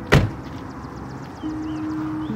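One sharp, loud thump just after the start, dying away within a fraction of a second, over background music with held notes.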